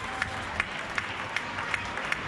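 Distant, scattered hand clapping from neighbours on the surrounding apartment balconies: separate sharp claps a few times a second over a low steady background hum.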